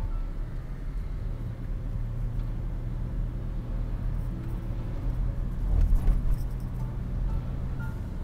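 Steady low road rumble of a moving vehicle, swelling louder about six seconds in. Faint background music with a few sparse notes plays over it.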